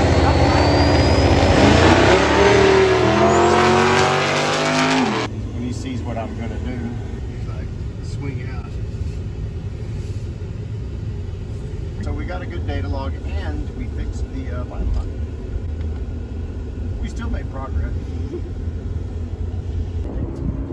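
Drag race cars launching off the line at full throttle, engine pitch climbing as they accelerate away; it cuts off suddenly about five seconds in. After that comes a steady low rumble of a pickup truck moving, heard from inside the cab, with faint voices.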